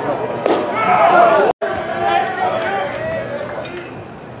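A pitched baseball smacks into the catcher's mitt about half a second in, followed by shouting voices; the sound drops out for an instant at about one and a half seconds, then voices chatter more quietly.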